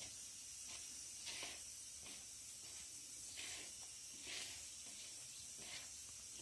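Fingers stirring and rubbing dry maida flour in a bowl: a few faint, soft swishes over a low steady background hiss.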